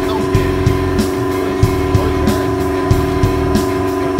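Background music: a sustained chord held over a steady drum beat, with the chord cutting off just after the end.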